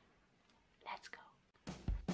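A brief whispered word from a woman about a second in, then music starting up near the end.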